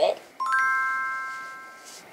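A single bright bell-like chime about half a second in, several pure tones struck together that ring on and fade away over about a second and a half.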